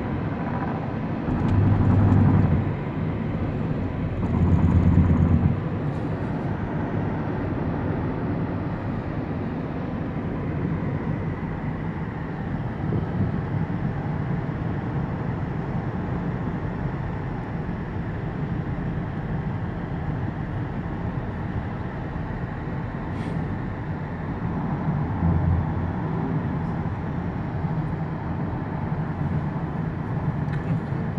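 Road noise of a moving car heard from inside the cabin: a steady rush of tyres and engine, swelling into louder low rumbles about two and five seconds in and again near the end.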